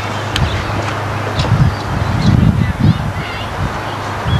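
Wind rumbling and buffeting on the camcorder microphone, with one sharp knock about a third of a second in.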